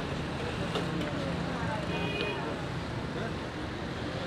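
Busy street ambience: steady traffic noise under background voices, with a few light clinks and a short ringing clink about two seconds in.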